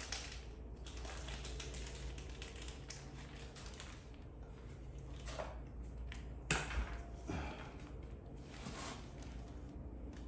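Light handling noises as the sharpener's new wheels and spacers are picked up and fitted: a few scattered clicks and knocks, the sharpest about six and a half seconds in, over a low steady hum.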